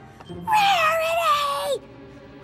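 A single long, cat-like cry that slides steadily down in pitch for a little over a second, starting about half a second in and cutting off shortly before the end.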